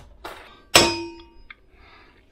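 A single sharp metallic clang about three-quarters of a second in, ringing for about half a second, with a lighter click before it: a metal utensil knocking against a stainless steel bowl.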